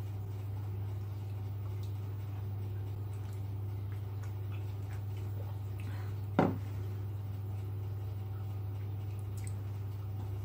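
Steady low hum in a small room, with a single sharp knock about six seconds in as a ceramic mug is set down on the kitchen counter.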